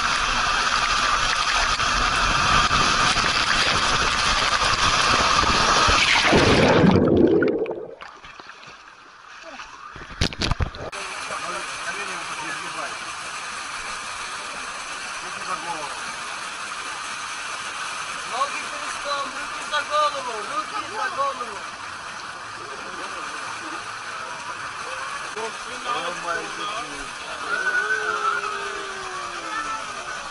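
Water and air rushing through an enclosed waterslide tube as a rider slides down it, loud and steady for about seven seconds, then sweeping down and cutting off suddenly.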